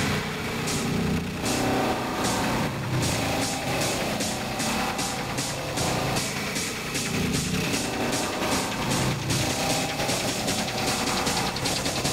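Hard techno breakdown: the pounding kick drum drops out at the start, leaving a quieter stretch of buzzing synth texture over evenly repeating high percussion ticks.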